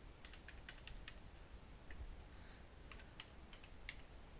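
Faint typing on a computer keyboard: scattered, irregular keystrokes as a file name is entered.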